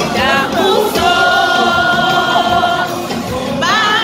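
Large choir singing, holding long notes, with a rising slide up to a new note near the end.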